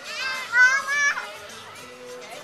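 A young child's high-pitched squeal, wavering and rising at first, then held for about half a second and breaking off a little past the first second.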